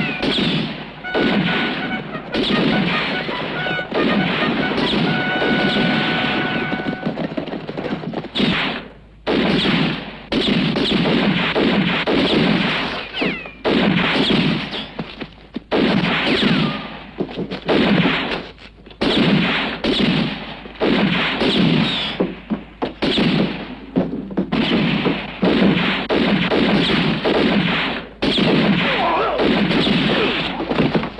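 Sustained movie gunfight: dense, rapid revolver shots fired back and forth, overlapping almost continuously with a few brief lulls. The shots are the dubbed sound effects of a 1960s spaghetti western.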